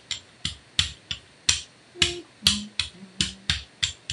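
Rubber brayer rolled quickly back and forth over a punchinella plastic mesh stencil on a gel printing plate, each pass giving a short, sharp click, about three a second.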